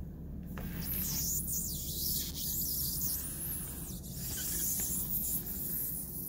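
Soft, irregular rubbing and scuffing of a gloved hand pressing and sliding along the edge of a rubber RV roof membrane over fresh sealant, over a steady low hum.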